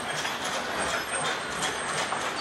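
Diesel locomotive running, a steady mechanical rumble and noise.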